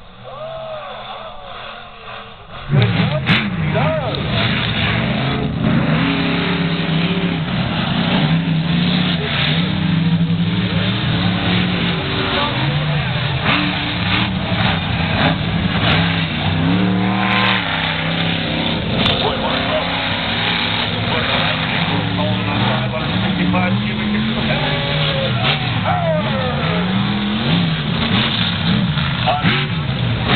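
Monster truck engines racing: loud engine noise comes in suddenly about three seconds in and keeps going, its pitch rising and falling as the throttle is worked.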